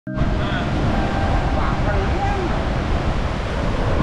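Sea surf washing over a rocky reef, heard as a steady rushing, with wind buffeting the microphone.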